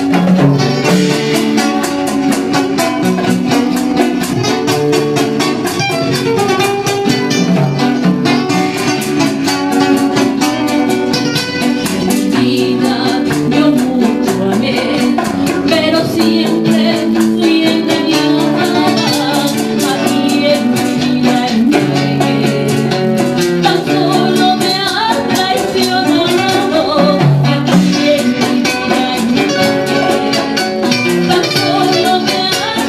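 Live Latin American rockola music: a woman sings over guitars and percussion that keep a steady beat.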